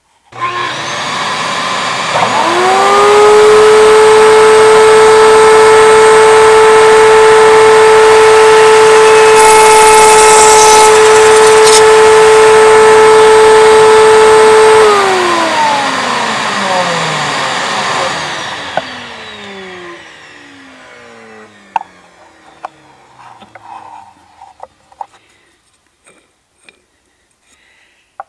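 Router in a router table starting and spinning up to a steady high whine, with a shop vacuum on the dust hose running alongside. About fifteen seconds in the router is switched off and coasts down with a falling pitch, and the vacuum winds down more slowly after it.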